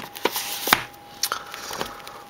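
Plastic DVD and Blu-ray cases clacking against each other and the shelf as several come out of a packed shelf stuck together: a handful of sharp clicks, the loudest a little under a second in.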